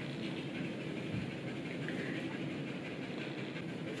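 Quiet, steady room noise with one soft knock on a wooden cutting board about a second in.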